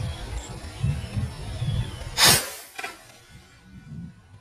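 A PCP air rifle fires a fish-spearing dart a little over two seconds in: one sharp, loud report, followed about half a second later by a second, weaker sound. Low wind and handling rumble runs under the first half.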